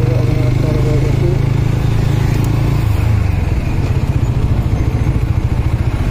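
Motorcycle engine running at low speed as the bike slows, heard from the rider's seat, its steady low note breaking into a quick pulsing beat about halfway through.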